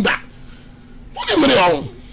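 A brief pause with a faint steady hum, then a man's single short, loud vocal burst a little over a second in, falling in pitch and breathy.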